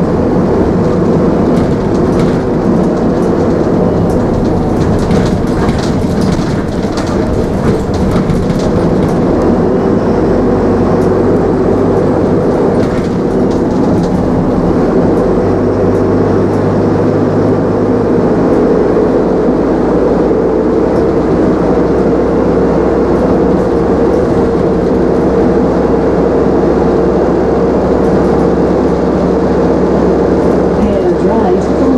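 Optare Solo single-deck diesel bus heard from inside the saloon while under way: steady engine and road noise, with the engine note shifting partway through. Light clicks and rattles come a few seconds in.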